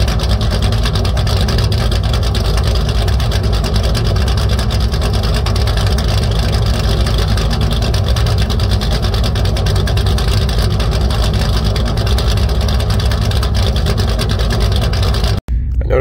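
Jeep V8 exhaust heard right at the twin tailpipes, the engine idling steadily with no revving.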